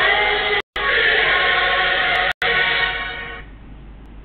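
Three girls singing together into a microphone, their song fading out about three and a half seconds in. The stream's sound cuts out completely twice for a moment.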